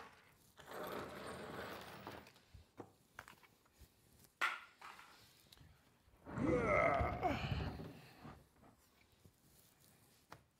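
Handling noise from a QIDI Q1 Pro 3D printer being shifted and turned on a plywood workbench. There is a rustle early on and a sharp click near the middle, then a louder scrape with a squeal that wavers in pitch for about a second and a half as the printer is swung round.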